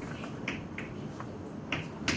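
Chalk on a chalkboard: about half a dozen short, sharp clicks at irregular intervals as the chalk strikes and is drawn across the board.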